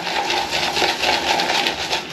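Synthetic shaving brush swirled in a tub of Pinnacle Grooming Believe shaving soap, building lather after more water was added: a steady, fast wet crackling swish.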